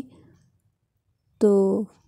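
A woman's voice ends a sentence, then after about a second of near silence says one short word.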